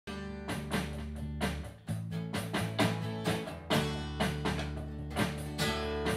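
A small band playing: an acoustic guitar strummed in a steady rhythm over an electric bass line, with no singing. The bass drops out briefly just before two seconds in.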